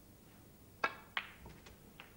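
A snooker cue tip striking the cue ball with a sharp click, then about a third of a second later the cue ball clicking into the pink, followed by a few faint ticks.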